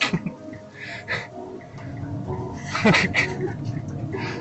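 Inside a moving car: a steady engine and road drone, with short bits of voice.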